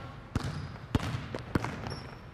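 A basketball being dribbled on a hardwood gym floor: about three bounces, a little over half a second apart.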